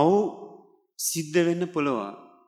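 A man's voice speaking into a microphone in two short phrases, the second starting with a breathy hiss about a second in.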